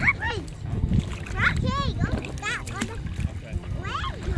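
Children's high-pitched calls and short wordless voice sounds, with water splashing around them.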